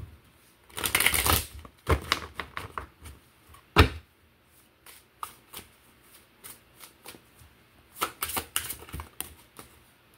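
A deck of tarot cards shuffled by hand, in irregular flurries of quick card clicks and flicks. The densest flurry comes about a second in, with one sharp knock of the deck around four seconds in and another flurry near the end.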